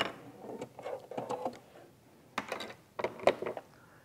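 Brief, irregular clicks and rustles of handling at a sewing machine and the quilt pieces under its foot, in four or five separate short bursts with quiet gaps between them.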